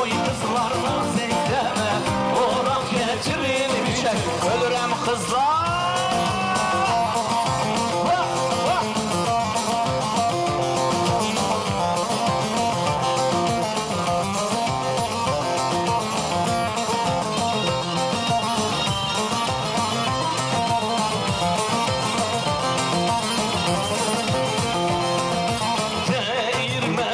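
Live Turkish wedding band playing a folk dance tune (oyun havası), steady and dense, with a note sliding upward about five seconds in.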